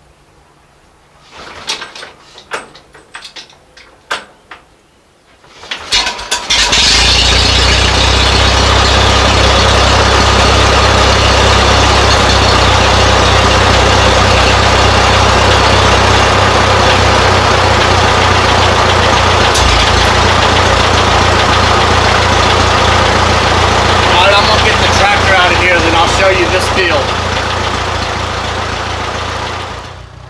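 A Farmall tractor's four-cylinder engine is hand-cranked from cold: a few short clanks and turns of the crank, then about six seconds in it catches and runs loud and steady.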